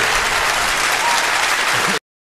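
An audience applauding steadily, then cut off abruptly at the end.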